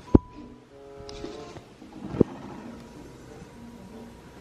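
Two loud, short thuds about two seconds apart, the first just after the start, with sustained suspenseful music notes between them.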